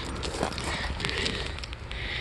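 Light crunching and crackling of gravel underfoot, over a steady low wind rumble on the microphone.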